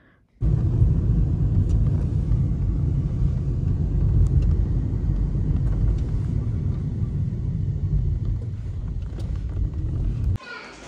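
Steady low road rumble of a moving car, heard from inside the cabin.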